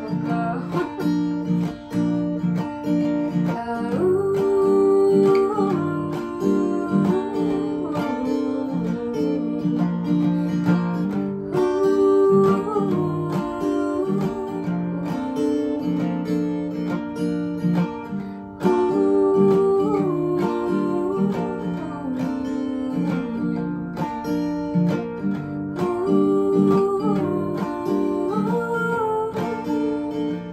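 Acoustic guitar strumming, with a phrase that repeats about every seven seconds.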